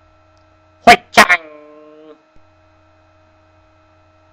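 Steady electrical mains hum with a low buzz under it. About a second in, a person's voice gives two short loud syllables, the second trailing into a held tone that stops about two seconds in.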